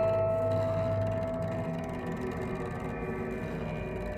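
Contemporary music for cello and live electronics: a held high tone with overtones fades away over the first two seconds, over a steady low drone that continues throughout.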